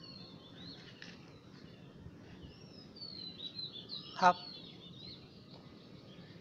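Faint bird chirps and twitters in the background, high and warbling, running through the pause, over a faint steady low hum.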